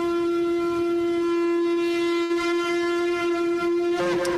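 A shofar (ram's horn) blast played back as a sound effect: one long, steady, brassy note held at a single pitch.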